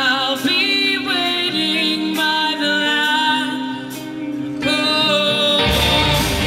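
A woman singing long held notes live into a microphone over sustained backing. About five and a half seconds in, the full rock band with drums comes in loudly.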